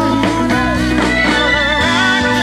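Live band playing a blues-rock number, with the guitar to the fore and its notes bending up and down in pitch over a steady low bass line.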